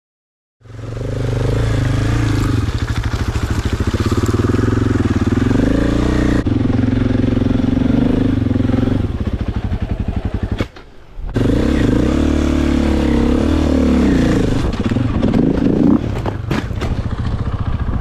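Enduro dirt bike engine running under changing throttle on a rough trail, its pitch rising and falling. The sound changes abruptly about a third of the way in and drops away briefly a little past the middle.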